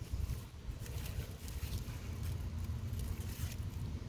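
Faint scratching and crackling of soil, grass and small roots as a young comfrey plant is pulled up by hand, over a steady low rumble.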